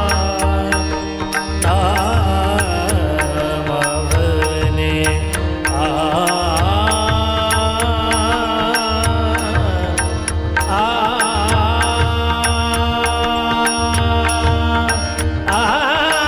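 Marathi devotional abhang: a male singer's wavering melodic line over a steady held drone, with a fast, even beat of sharp metallic strikes and a low drum.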